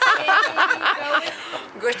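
A woman laughing in a run of short chuckles, then speaking again near the end.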